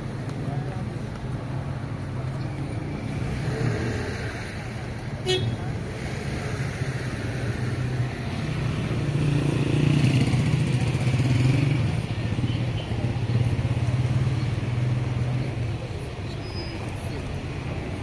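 Street traffic: a motor vehicle's engine running steadily, swelling louder for a few seconds in the middle as it passes close by. A single sharp click sounds about five seconds in.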